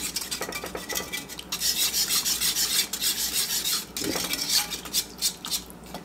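A metal spoon stirring and scraping a thick puree of blended tomatoes and basil around a dish, in quick repeated strokes that are busiest in the middle seconds.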